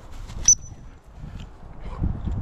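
Low rustling and wind noise as a spaniel pushes through long grass and hedgerow, with a single sharp, high ringing ping about half a second in that fades away within half a second.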